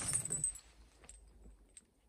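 Heavy metal chains hung on the ends of a bar chinking faintly as the bar is deadlifted, a few scattered clinks.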